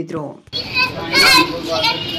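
Speech: a voice trails off, then about half a second in the sound cuts to an outdoor crowd, with several people talking over one another over a steady background hum.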